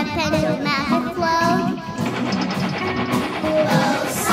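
Children's song: a child singing a melody with vibrato over instrumental backing.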